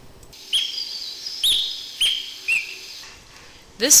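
Bornean green magpie calling: four short, high calls, each with a sharp start that drops into a brief held note, the last one lower than the rest.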